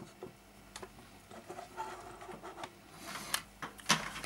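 Light clicks, taps and rustling from a circuit board and a small USB soldering iron being handled on a wooden bench, with a denser rustle and a sharp click near the end.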